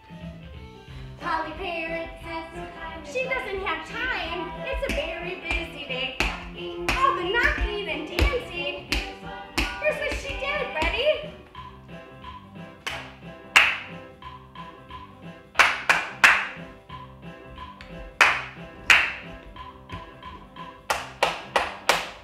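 A children's song with a sung vocal plays through the first half. In the second half the singing stops and sharp hand claps ring out over the music: one alone, then in quick groups of two or three.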